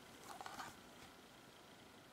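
Near silence, with faint rustling of trading cards being handled in the first half.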